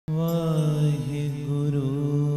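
Harmonium drone with a voice holding a long sung note in Sikh Gurbani kirtan, the note sliding and bending in pitch near the end. The music starts abruptly at the very beginning.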